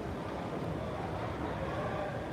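Steady low background noise of a large exhibition hall, with faint voices far off.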